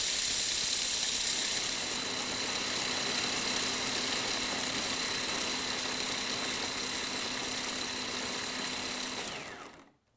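Electric food processor motor running steadily as it grinds sunflower seeds, then winding down in pitch and stopping near the end.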